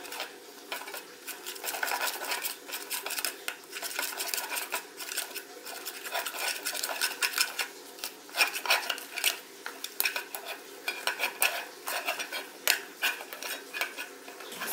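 Plastic spatula stirring and scraping foamy slime around an enamel bowl: a dense, irregular run of short scrapes and clicks.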